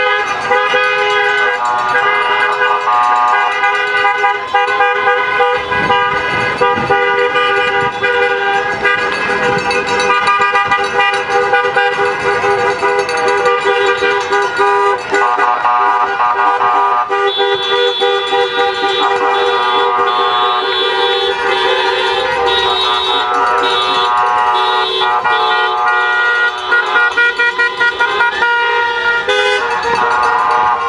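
Car horns honking almost without pause as a line of cars drives past, several horns sounding at once and overlapping, with a run of short quick toots near the end.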